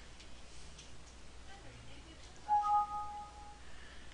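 Windows 7 system alert chime for a warning dialog: a short two-tone ding from the computer about two and a half seconds in, ringing for about a second.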